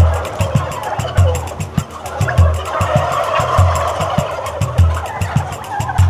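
A large flock of white domestic turkeys gobbling and calling all at once, a dense, continuous clamour. Under it, a low thump recurs about every second and a bit.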